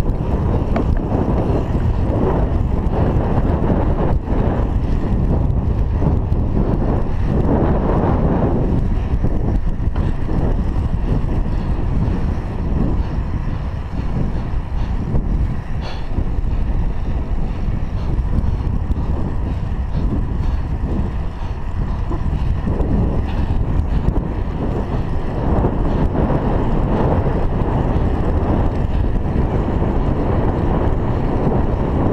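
Wind buffeting the microphone of a chest-mounted GoPro Hero 3 on a moving bicycle: a steady, heavy low rush.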